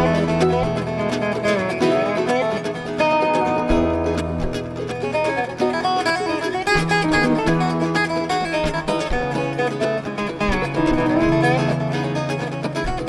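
Bluegrass band playing an instrumental jam: many quick plucked string notes over a stepping bass line, with a dobro played with a steel bar among them.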